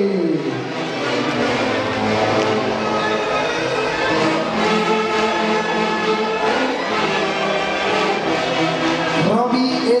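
A live Peruvian orchestra playing tunantada dance music, with several melody instruments holding long notes together.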